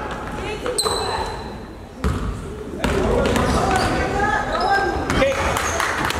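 A basketball dribbled on a hardwood gym floor, with spectators' and players' voices and shouts echoing around the gym. A high, thin steady tone sounds for about a second near the start.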